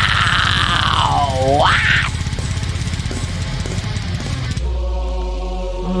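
An extreme metal song plays, with a high vocal squeal that swoops down and back up in pitch over dense, fast drumming. About four and a half seconds in, the song stops abruptly and leaves a held low note and a steady sustained tone as it ends.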